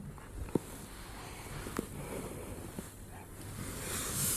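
Quiet room tone with soft rustling and three small clicks, from a body moving on an exercise mat while the hands grip the pole.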